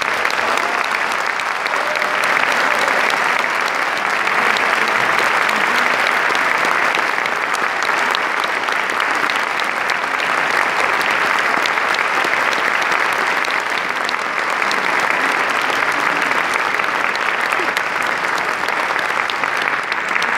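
Audience in a concert hall applauding steadily.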